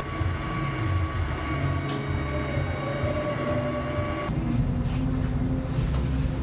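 A low, steady rumbling noise with faint sustained high tones held over it, its texture shifting about four seconds in.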